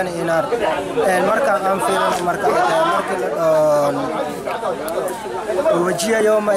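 A man speaking, with other voices chattering behind him.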